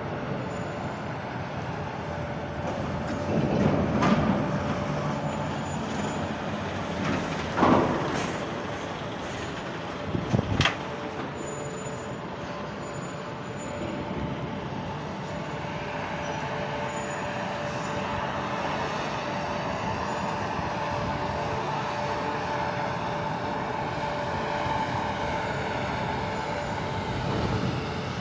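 Articulated diesel lorry hauling a shipping container approaches and drives past close by, its engine humming steadily. There are louder swells about four and eight seconds in and a sharp knock about ten seconds in, and the rumble grows fuller in the second half.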